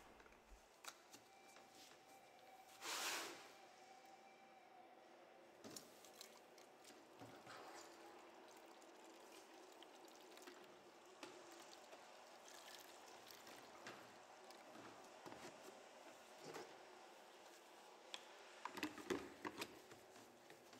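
Faint sound of water poured from a plastic gallon jug into a plastic foam cannon bottle. There is a brief louder rush about three seconds in, and small clicks and plastic handling clatter near the end as the cannon head is fitted.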